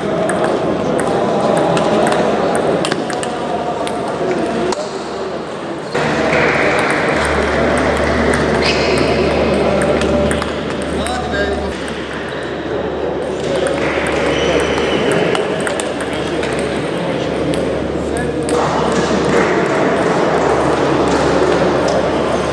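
Table tennis balls clicking off paddles and tables in rallies, many sharp clicks throughout, over the chatter of voices in a large sports hall.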